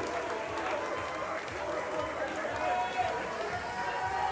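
Crowd chatter: many voices talking at once, indistinct, in a lull between band numbers.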